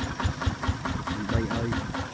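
Single-cylinder diesel engine of a Kubota ZT155 Pro walking tractor running steadily as the tractor works the field, with an even, rapid pulsing beat.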